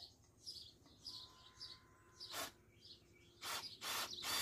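Small birds chirping faintly, a run of short high chirps in the first couple of seconds. Brief bursts of noise follow, the loudest of them near the end.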